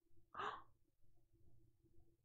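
A person's single short breath out, about half a second in; otherwise near silence.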